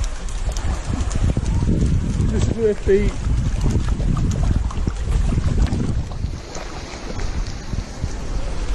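Wind buffeting the microphone: a loud, uneven low rumble. A brief word is spoken about two and a half seconds in.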